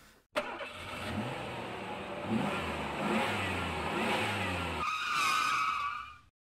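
A motor vehicle engine revving up, its low pitch rising several times as it accelerates. About five seconds in, a higher wavering tone joins it before the sound stops.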